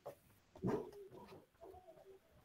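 Faint low cooing of a bird, a few short calls.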